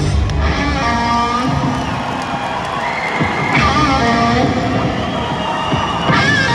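Electric guitar playing alone with held notes that waver and bend, as the drums and bass stop right at the start, over an arena crowd cheering.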